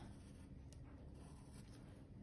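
Faint scratching of a graphite pencil on textured watercolour paper, drawing short curved strokes.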